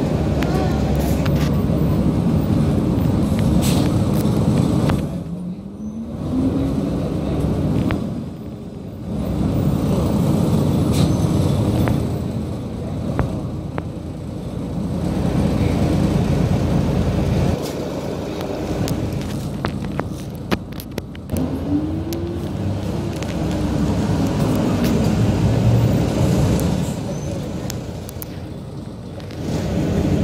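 City bus engine running under way, heard from inside the bus, a low steady rumble whose pitch climbs a few times as the bus accelerates, along with the noise of surrounding traffic.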